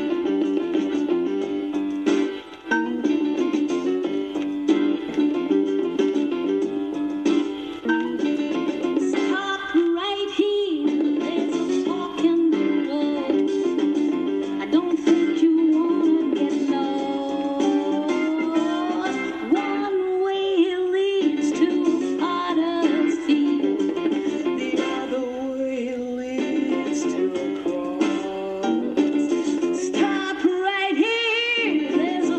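A worn gospel soul record playing on a portable suitcase turntable, with surface noise from the record's wear crackling under the music.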